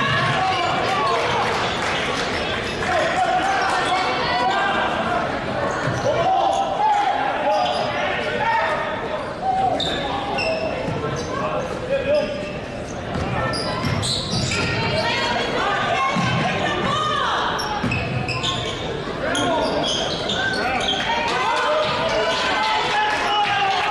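Basketball game in a gymnasium: a ball dribbling on the hardwood court, with short sneaker squeaks and the voices of players and crowd echoing through the hall.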